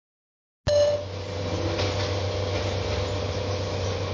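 Steady background noise of building and demolition machinery, a low hum with a constant mid-pitched tone over an even rumble, starting abruptly just under a second in.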